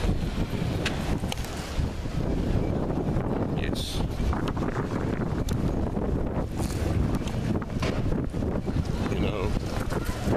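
Wind buffeting a handheld camera's microphone: a steady low rumble, with a few faint brief clicks and higher sounds behind it.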